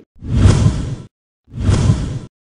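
Two whoosh sound effects with a deep rumble underneath, each about a second long and cutting off abruptly; the second starts about one and a half seconds in.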